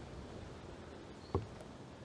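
Faint, steady outdoor background noise, with one short light knock a little past the middle.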